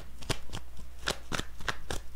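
Tarot cards being shuffled or handled by hand: an irregular run of sharp, light card clicks, several a second.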